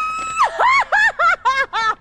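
A cartoon woman's high-pitched laugh: a held, shrill note, then a quick run of "ha" bursts, about five a second, each rising and falling in pitch.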